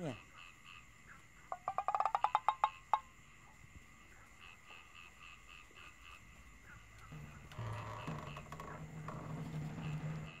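Night ambience: a frog's rapid pulsed croak, a short run of about a dozen quick pulses, comes about a second and a half in over faint, regular insect chirping. In the last three seconds there is a low, steady grating sound.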